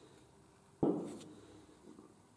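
A single metallic clunk from the boiler's flue-gas damper lever being swung by hand to a new setting, fading out over about half a second.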